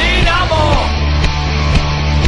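Rock song with a heavy band backing, a hockey fan anthem in an instrumental gap between sung lines; a gliding melodic line dies away under a second in, leaving the steady band.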